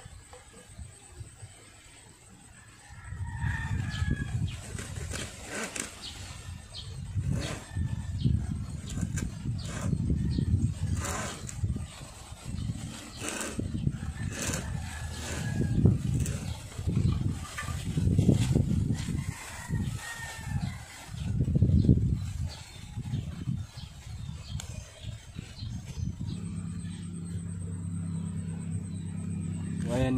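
Hand-boring a hole through a bamboo tube: repeated scraping, rubbing strokes of a tool working into the bamboo, one every second or two, starting about three seconds in.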